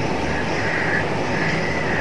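Steady rushing background noise with a faint low hum and no distinct events.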